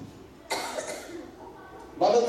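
A single cough, about half a second in, picked up close on the microphone, sudden and dying away quickly.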